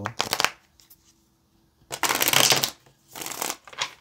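A deck of tarot cards being shuffled by hand, in four short bursts of riffling card noise with pauses between. The longest and loudest burst comes about two seconds in.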